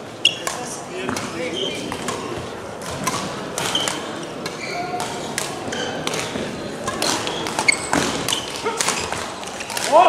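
Badminton rally: rackets striking the shuttlecock with sharp, irregular clicks, and shoes squeaking on the sports hall floor.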